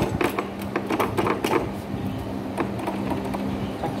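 Metal clicks and knocks from a Makita chisel mortiser and its homemade sliding clamp carriage as they are pressed and worked by hand to test how tightly the clamp holds. The knocks come thickest in the first second and a half, over a steady low hum.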